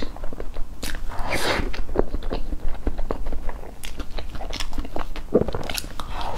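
Close-miked eating of layered cake with a fork: wet chewing and quick mouth clicks, with a longer noisy smear about a second in.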